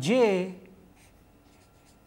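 Felt-tip marker writing on paper: a series of faint, short strokes as symbols are written out.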